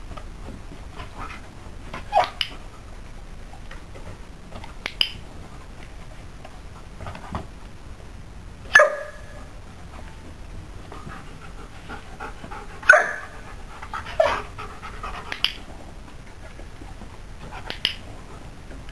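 Belgian Shepherd dog panting steadily, with short, sharp sounds every few seconds; the loudest come about nine and thirteen seconds in.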